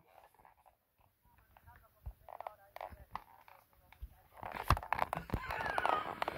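A live phone-in caller's voice over the telephone line, faint and indistinct at low volume. It grows louder over the last second and a half, with a couple of clicks.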